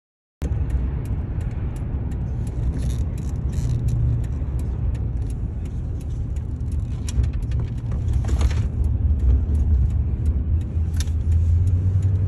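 A car running with a steady low engine rumble, scattered sharp clicks and short bursts of hiss over it. The sound cuts in suddenly just after the start and grows a little louder near the end.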